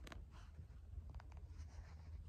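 Faint scuffing and rustling of footsteps on a dry, leaf-littered forest floor, with a few small clicks and a steady low rumble on the microphone.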